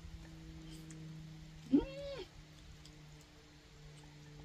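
A cat meowing once, about two seconds in: a single call of about half a second that rises and arches in pitch.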